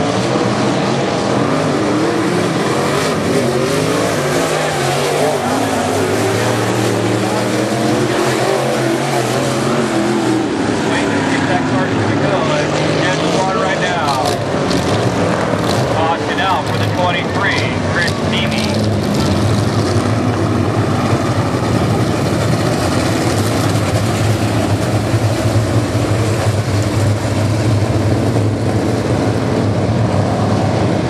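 IMCA Modified race cars' V8 engines running on a dirt oval, their pitch rising and falling as they throttle through the turns and pass.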